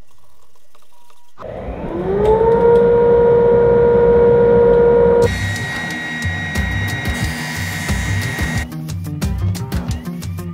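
Delta drum sander's motor starting up: a rising whine that levels off into a steady hum about a second and a half in. Halfway through it gives way to a higher steady tone with noise, and background music with a beat plays along.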